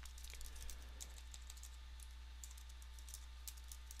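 Faint typing on a computer keyboard: quick, irregular key clicks, with a steady low hum underneath.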